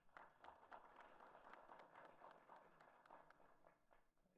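Faint audience applause: many quick claps blending into a steady patter.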